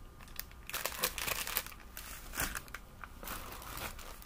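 Plastic candy bags crinkling and rustling as they are handled, in a run of irregular crackles.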